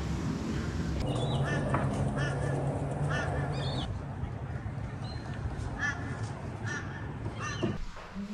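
A crow cawing repeatedly in short, harsh calls, some in quick pairs, over a low steady hum.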